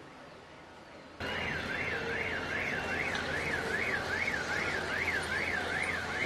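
A siren sweeping rapidly up and down in pitch, about two and a half sweeps a second, over loud street noise; it cuts in suddenly a little over a second in.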